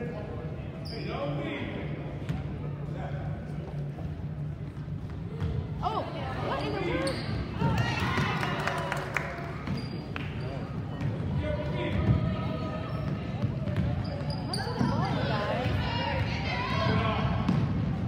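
A basketball bouncing on a hardwood gym floor during play, short knocks scattered through, with spectators' voices and calls around it.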